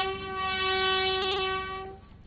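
A bugle call at a military funeral salute: a few short notes lead into one long, steady note held for almost two seconds, which stops just before the end.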